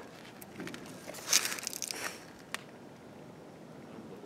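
Footsteps and handling noise: a few sharp clicks, then a rustling, crunching scuff about a second in, and one more click.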